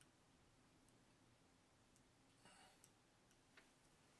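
Near silence: room tone with a few faint, sparse clicks and one brief faint scrape a little past the middle.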